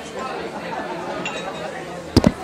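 Indistinct chatter of many people talking at once, a steady background murmur of voices in a busy room.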